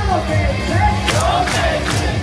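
A baseball player's cheer song playing over stadium speakers with a steady drum beat, a crowd chanting along. Sharp crowd shouts land in time with the beat about every half second in the second half.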